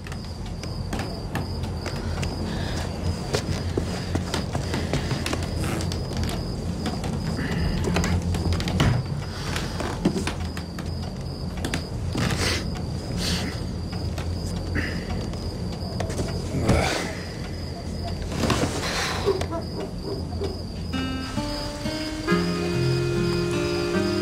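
Film soundtrack night ambience: a steady high cricket chirr over a low, sustained musical drone, with a few brief soft noises. Pitched score notes come in near the end.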